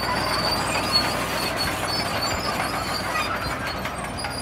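Crawler loader on steel tracks running and pushing earth: a steady mechanical noise with thin high squeaks from the tracks.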